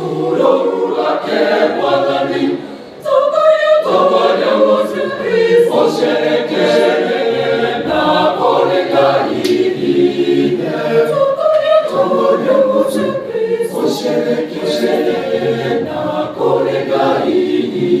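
Mixed choir of women's and men's voices singing a hymn a cappella in several parts, with a brief pause just before three seconds in before the full choir comes back in.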